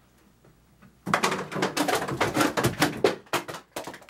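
Things knocked off a table, clattering and knocking in a quick jumble for about three seconds, starting about a second in.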